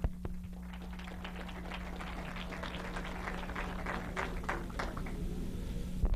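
An audience applauding with scattered, many-handed clapping that thins out shortly before the end.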